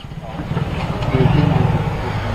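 A motor vehicle engine running and growing louder, with faint voices under it.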